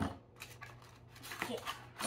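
A sharp knock, then a few light clicks and rattles of wooden toy graham-cracker pieces against their small cardboard box as one is taken out, with a child saying a short word near the end.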